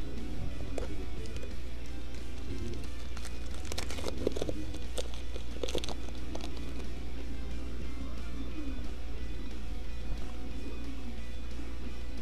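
Background music over a steady low hum, with the foil wrapper of a baseball card pack crinkling and tearing open in a burst of sharp rustles between about three and six seconds in.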